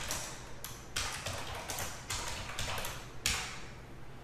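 Computer keyboard being typed on: a run of irregular, sharp key taps.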